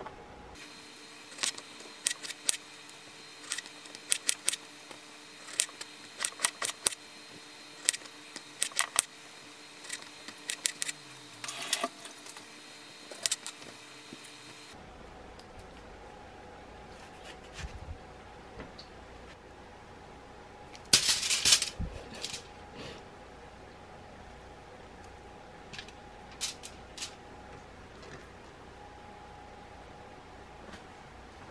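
A kitchen knife slicing strawberries on a plastic cutting board, making a run of sharp, irregular taps as the blade strikes the board. After a change in the background hum the taps become sparser, with a louder cluster of clatter about two-thirds of the way through.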